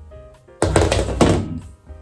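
A homemade metal-tube speaker stand set down on the floor: a loud thunk about half a second in, followed by about a second of clattering and ringing from the tubes.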